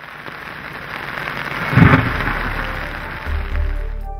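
Heavy rain falling steadily, with a sudden loud thunderclap from a lightning strike to the nearby antenna mast a little under two seconds in.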